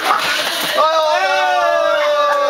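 Group chatter, then about a second in a voice breaks into one long drawn-out call that slowly falls in pitch.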